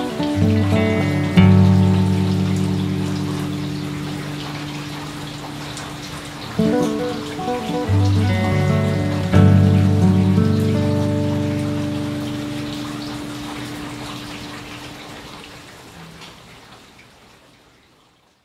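Slow background music of plucked-string notes, in two phrases that each ring out and die away, over a steady rain-like hiss. It fades out to silence near the end.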